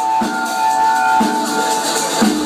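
Live house music from a band: a drum kit beating under held high notes, with a deep drum hit about once a second.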